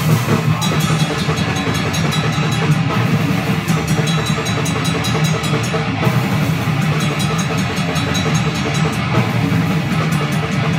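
A death metal jam: a drum kit played hard and fast, with a fast, steady run of cymbal strokes, alongside a distorted electric guitar, loud and unbroken.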